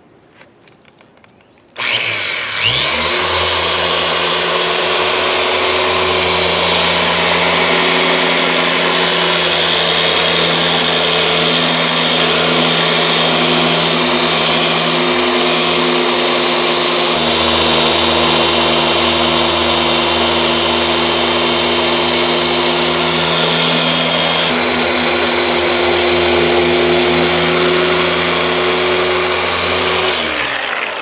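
Shurhold dual-action polisher with a 4-inch orange foam pad switching on about two seconds in, winding up with a brief rising whine, then running steadily with the pad pressed on car paint, cutting a deep scratch with compound.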